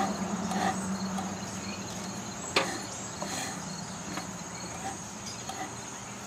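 Steady high insect chirring, with a low steady hum beneath it and a single sharp click about two and a half seconds in.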